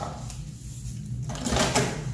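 Built-in microwave oven door being pulled open: a brief clack and rattle about a second and a half in, over a steady low hum.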